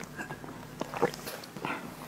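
Close-miked mouth sounds after a sip of ice water: swallowing and a few short, wet lip and tongue clicks.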